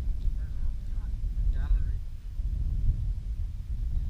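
Wind buffeting an outdoor action-camera microphone: an uneven low rumble that runs throughout, with faint voices in the background.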